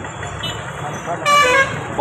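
Street traffic noise with a vehicle horn tooting once, a steady tone for about half a second, a little over a second in.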